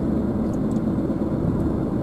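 Steady road and engine noise of a car driving, heard from inside the cabin.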